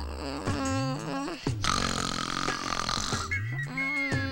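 Comedy film background music with swooping sound effects and grunting, burp-like noises.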